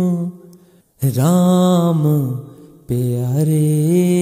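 Voice singing a devotional shabad in a slow, chant-like style. A held note dies away into a short silence, then a new phrase opens with a swooping glide in pitch and fades, and a steady held note takes over near the end.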